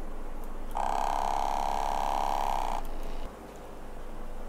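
Battery-powered ATMAN ATOM-2 aquarium air pump running with its case open, its mechanism humming steadily. About a second in, a louder, flat-pitched buzz from the mechanism comes in for about two seconds, then the sound drops near the end; the pump's vibrating mechanism is loud.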